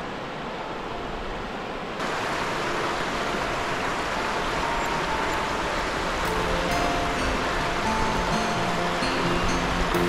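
River water rushing over a shallow rocky rapid, a steady noise that gets louder about two seconds in. Background music with sustained notes comes in around the middle and carries on over the water.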